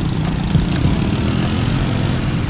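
Steady low rumble of motorcycle engines and road traffic, heard from a bicycle riding along the road, with wind on the microphone.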